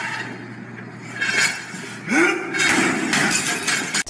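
Gym weights crashing and clanging as a man in a rage throws a barbell about: a sharp crash at the very start, then more metal clattering, with a yell in the middle. A steady low hum runs underneath.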